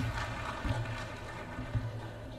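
Low rumble picked up by the lectern microphones, with soft thumps at the start, a little under a second in and near the end: handling noise as the speaker settles at the lectern.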